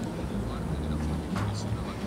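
A steady low rumble with indistinct voices in the background, and a single sharp click a little past halfway.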